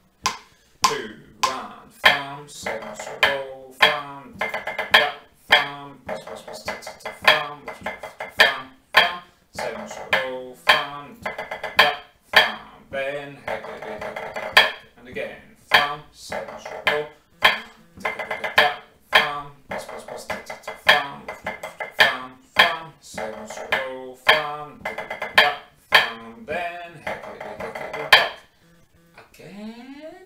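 Pipe band snare drum part of a 3/4 march played with sticks on a rubber practice pad: a steady run of strokes, flams and rolls in triple time, stopping about two seconds before the end.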